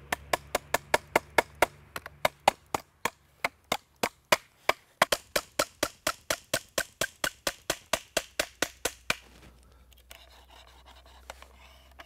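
A small wooden peg tapped into a hole in a wooden upright with the folded metal body of a Leatherman multitool: a quick, even run of sharp knocks, about four or five a second, stopping about nine seconds in.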